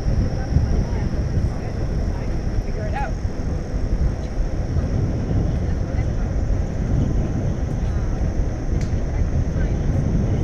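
Wind rushing over the microphone of a camera on a moving bicycle, a steady low rumble with the hiss of tyres rolling on asphalt.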